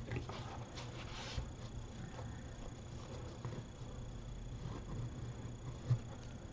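Faint rustling and crinkling of a paper napkin being pressed and folded around the rim of a paper cone, with a few light handling ticks and a brief louder rustle about a second in.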